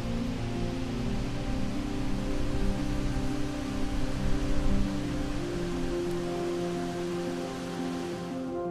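Background music of long held notes that change slowly, over a steady rushing noise.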